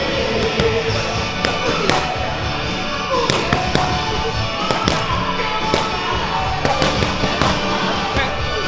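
Gloved punches smacking into focus mitts in quick, irregular combinations, sharp pops over background music.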